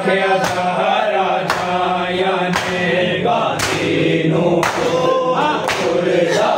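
Men's voices chanting a nauha (mourning lament) together, with a sharp slap about once a second in time with the chant, typical of hands striking bare chests in matam.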